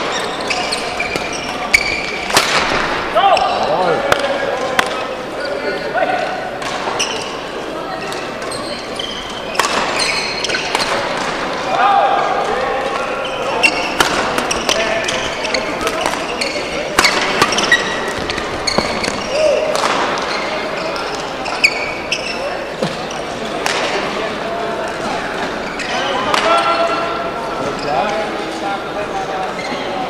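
Badminton doubles rallies on an indoor court: sharp racket strikes on the shuttlecock at irregular intervals, mixed with short squeaks of court shoes on the floor, over voices from around a large hall.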